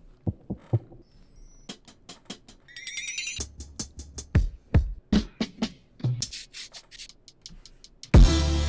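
Percussion one-shot samples being auditioned one at a time in beat-making software: a string of short, separate hits of differing pitch, some with a low thump and one a brief pitched rattle, with no beat behind them.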